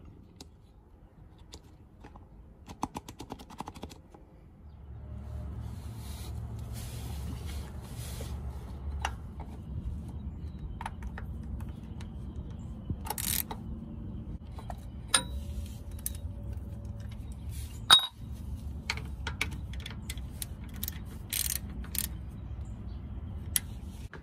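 Metal clicks and clinks of a socket ratchet and a cartridge oil-filter wrench working the oil filter housing under the truck, with a quick run of ratchet ticks early and scattered sharper clinks later. A steady low rumble sets in about four seconds in.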